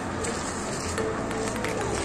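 Outdoor street ambience: a steady background noise with voices and music mixed in, and no single loud event.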